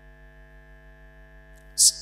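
Steady electrical mains hum from the sound system, with a short hiss near the end.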